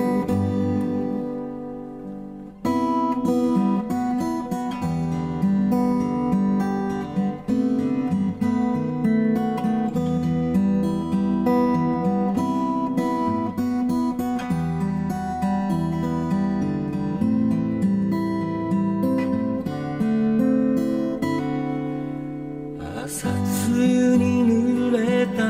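Steel-string acoustic guitar played solo as an instrumental interlude: a chord rings and fades over the first two seconds, then the guitar comes back in sharply with a run of changing picked notes and chords. Singing starts again right at the end.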